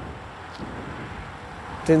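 Faint, steady outdoor background noise in a pause between speech, with a man's voice starting again near the end.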